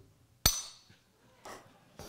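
A small hammer strikes a mineral specimen once, about half a second in, knocking a piece off: one sharp crack with a brief high ringing after it, followed by a faint rustle of handling.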